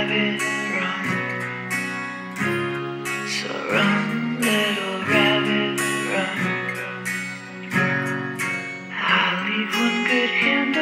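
Acoustic guitar strumming chords in an instrumental passage of a song, with a wavering melody line sounding above the chords at times.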